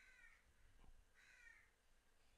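Near silence: room tone, with two faint, brief higher-pitched sounds, one at the start and one just past the middle.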